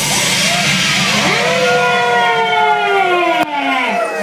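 Electronic siren-like sound effects from the show's sound system: a rush of noise, then several long tones gliding slowly down in pitch, broken off sharply near the end.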